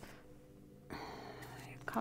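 A woman's soft, breathy whisper starting about a second in and running on until she speaks aloud.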